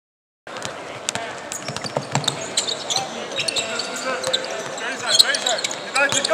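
Basketball game sound in an arena, starting abruptly about half a second in: a ball bouncing on a hardwood court, short squeaks, and players' and spectators' voices echoing in the hall.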